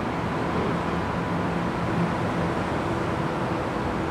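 Steady background room noise: an even hum and hiss with a faint steady tone, of the kind an air conditioner or fan makes, with no distinct events.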